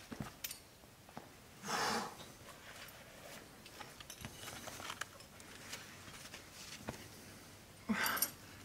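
A rock climber's hard breathing while straining on a lead climb, with one sharp, forceful exhale about two seconds in and weaker breaths after it. Scattered faint clicks run through it.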